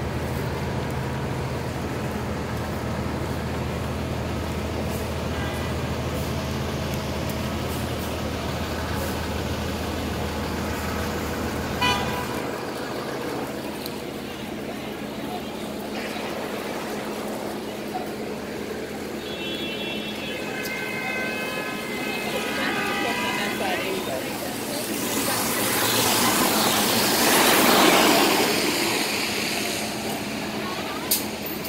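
A New York City hybrid electric transit bus runs with a steady low hum close by, and the hum falls away about twelve seconds in as the bus pulls off. City street traffic follows, with a high pitched tone held for a few seconds past the midpoint. Near the end a passing vehicle swells in a rush of tyre noise on the wet road.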